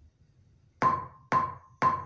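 Metronome count-in clicks: three sharp, evenly spaced ticks about half a second apart, each with a brief ringing tone, starting about a second in after near silence.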